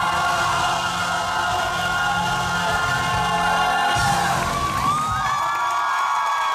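Singers and band hold the final chord of a stage-musical number, which ends about five seconds in. The audience breaks into cheers and whoops near the end.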